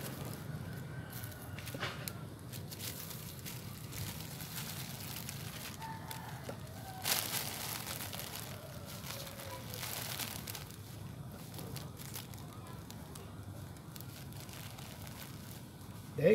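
Thin plastic sheeting crinkling and rustling as hands work moist potting soil in it, with scattered small crackles and a louder rustle about seven seconds in.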